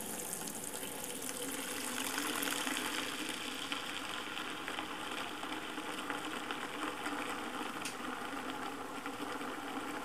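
Tap water running in a steady stream into a bucket of car shampoo, filling it and whipping up suds.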